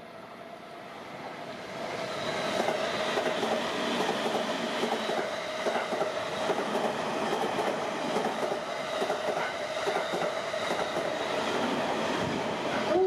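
Electric commuter train pulling out of the station and running past along the platform. It gets louder over the first two seconds, then runs steadily with a continuous rattle.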